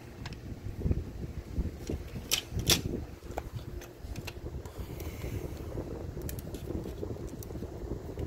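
Handling noise at a workbench as test leads and the radio's chassis are moved about: a steady low rumble with a few sharp clicks, two of them close together a little over two seconds in. The radio itself makes no sound because it is dead.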